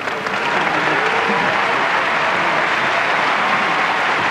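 Audience applause that swells up at the start and then holds loud and steady.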